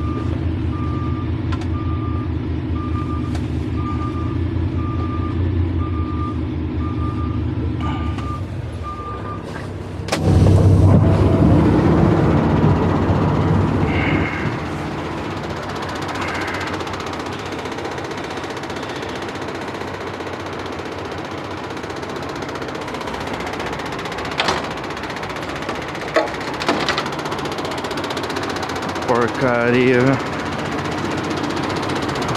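Semi-truck tractor's diesel engine running while it reverses, with its backup alarm beeping at an even pace for about the first nine seconds. Around ten seconds in, a louder low rumble lasts a few seconds; after it the engine idles more quietly, with a few sharp knocks near the end.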